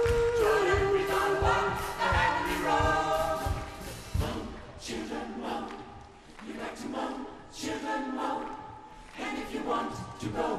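Gospel choir singing live, with a woman soloist holding a long note over the choir and a steady low beat. About four seconds in the beat stops and the choir carries on more quietly in held chords.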